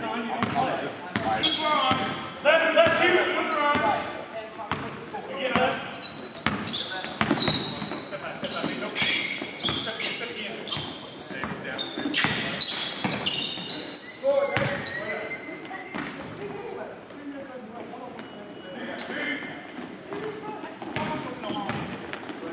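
Basketball game on a gym's hardwood floor: the ball bouncing in repeated sharp thuds, with short high squeaks of sneakers, echoing in the large hall. Players shout in the first few seconds.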